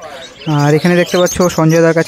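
A man's voice, loud and close, starting about half a second in as a string of short held syllables at a nearly steady pitch, like a chant or a repeated call. Faint bird chirping underneath.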